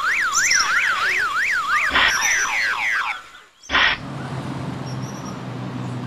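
Electronic alarm tone sweeping up and down about three times a second, in the manner of a car alarm, stopping about two seconds in. A run of short falling chirps follows, then after a brief dip and a short burst, a low steady hum.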